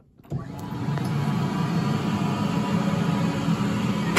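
Advance SC750 walk-behind floor scrubber's electric motors switching on about a third of a second in and settling into a steady, loud whirring run within a second.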